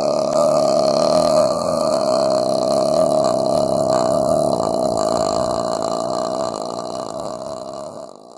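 A man's voice imitating vocal fry: one long, low, creaky 'uhh' drawn out without words, fading near the end.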